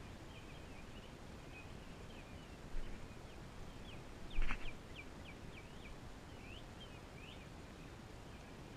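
Small birds chirping in short, quick high notes throughout, over a steady outdoor hiss. A sharp thump about halfway through is the loudest sound, with a lighter knock shortly before it.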